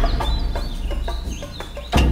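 Dramatic TV-serial background score: a low sustained drone with a heavy hit at the very end, under short stepped calls like a hen's clucking and a few high chirps.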